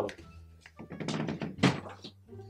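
Background music with a single sharp thump about one and a half seconds in, after a short stretch of rustling.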